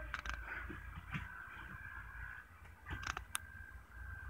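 Quiet room with a few faint clicks and rustles of a phone being handled, over a faint steady high-pitched whine.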